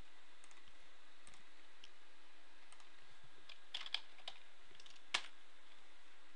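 Computer keyboard being typed on: scattered light key clicks, a short cluster of them about four seconds in and one sharper click about a second later, over a steady faint hiss.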